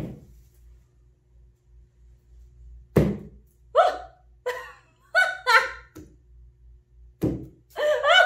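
A mallet thumping down onto a puddle of wet acrylic paint on a stretched canvas, once about three seconds in and again near the end. Between the two blows a woman giggles in short bursts.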